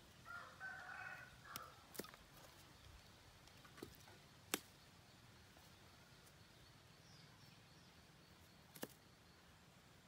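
A rooster crows once, faintly, near the start. Then come several sharp clicks of pliers working the wires of the water pump's terminal box, the loudest about four and a half seconds in.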